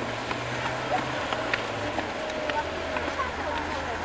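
Footsteps of a group walking up steps, with faint distant voices. A low hum fades out about a second in.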